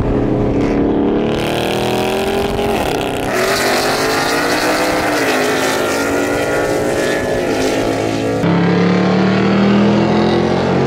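V8 muscle-car engines accelerating on the freeway, the pitch climbing and dropping back at gear changes about 3 and 5 seconds in. From about 8.5 seconds the sound changes abruptly to a steadier engine drone heard inside the car's cabin.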